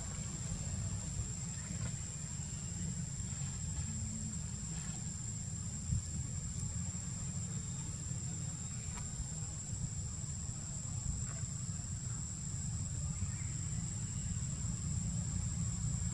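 Steady outdoor background with a low rumble and a thin, continuous high-pitched tone, and one faint knock about six seconds in.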